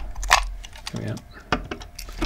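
Small sharp clicks of a die-cast Matchbox toy truck's trailer being unhitched from its cab, two clicks a little over a second apart.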